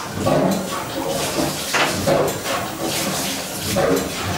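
Steam tug's engine running, with repeated hissing chuffs and mechanical clatter over a steady steam hiss.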